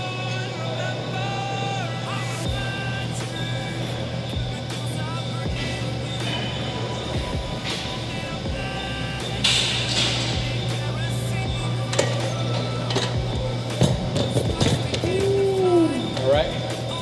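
Background music playing, with a few sharp knocks scattered through it.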